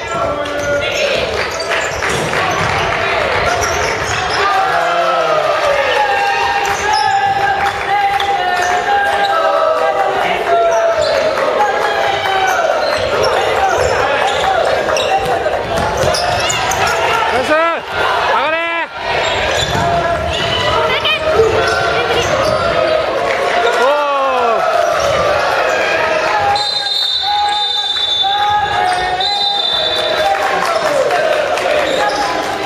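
Sounds of a basketball game in a gymnasium: the ball bouncing on the hardwood floor, short sneaker squeaks and players' voices calling out, echoing in the hall.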